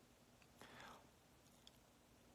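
Near silence, with a faint breathy sound from the person at the phone about half a second in and a tiny click shortly after.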